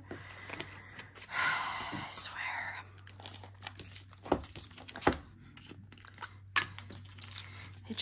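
Small plastic zip bag crinkling for a second or so, then a few sharp clicks of small plastic diamond-painting storage containers being picked up and set down.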